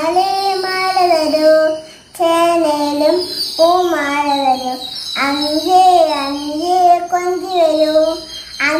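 A young girl singing a Malayalam counting rhyme solo and unaccompanied, in short sung phrases with brief breaks for breath about two, three and a half and five seconds in.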